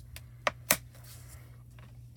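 Handling noise from foil and a wooden stamp being moved on a steel sheet: two sharp clicks about half a second in, a quarter second apart, among a few fainter ticks.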